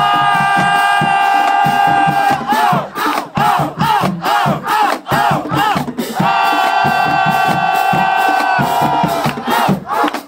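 High school drumline playing a cadence: snare, tenor and bass drum strokes on a steady beat. Over it come two long held loud chords, one at the start and one about six seconds in, with short rhythmic pitched calls on the beat between them.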